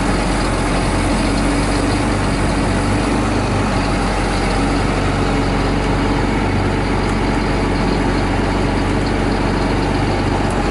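Heavy diesel engine of logging equipment idling steadily.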